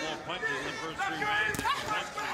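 Voices talking over the fight's arena background, with a single sharp knock about one and a half seconds in.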